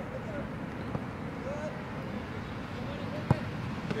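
A soccer ball being kicked: one sharp thump about three seconds in, over steady field ambience with faint distant voices calling.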